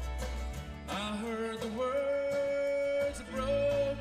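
Live country band playing with banjo, acoustic and electric guitars, bass and drums: a steady drum beat under a melody of long held notes that bend in pitch. The deep bass drops out about half a second in and comes back near the end.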